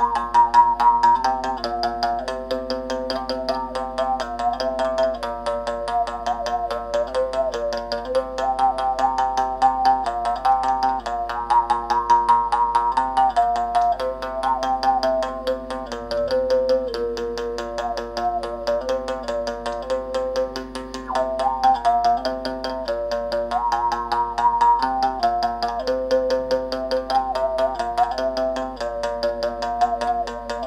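Moungongo (mungongo), a Gabonese mouth bow, played solo: its string is tapped rapidly and evenly with a thin stick over a steady drone, while the player's mouth picks out a shifting melody of overtones.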